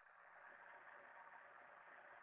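Near silence with a faint steady hiss.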